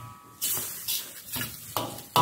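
Metal ladle stirring and scraping rice around a steel wok, about four scrapes roughly half a second apart, with a brief metallic ring at the start.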